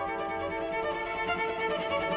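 Solo cello bowing a sustained melodic line, the notes held and changing smoothly.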